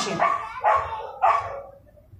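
A dog barking twice, about half a second apart.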